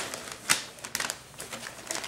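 Tissue paper and plastic gift wrapping rustling and crinkling as a present is pulled free, with a sharp crackle about half a second in and lighter crinkles after.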